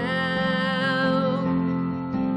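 A woman singing a slow worship song, holding one long note with vibrato over sustained instrumental accompaniment; the note ends about a second and a half in while the accompaniment carries on.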